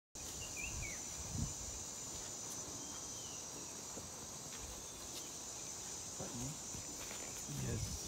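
A steady, high-pitched insect chorus, with a short bird chirp about half a second in and another near three seconds.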